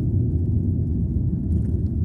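A car driving along a paved road, heard from inside the cabin: the tyres and engine make a steady low rumble.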